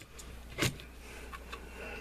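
Handling of a hard plastic match case and metal calipers on a cutting mat: one sharp light knock about two thirds of a second in, then a few faint clicks, over a low steady hum.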